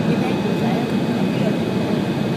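Steady in-flight cabin noise of an Embraer 170 on approach: the General Electric CF34-8E turbofan and the rushing air heard from a window seat beside the engine, with a faint high whine. Faint passenger voices sit underneath.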